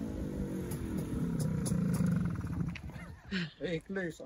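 MZ TS 250/1's single-cylinder two-stroke engine running as the motorcycle rolls up and slows, its pitch falling during the first second and then holding low, dropping away about three seconds in when a man's voice takes over.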